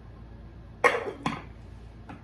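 Two clanks, a little under half a second apart, from a metal cooking pot being set down and its metal lid being put on. The first clank is the louder.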